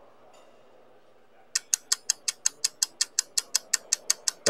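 Faint room noise, then about a second and a half in a steady run of sharp ticks begins, about six a second, the ticking lead-in of a bumper music track that goes on into guitar music.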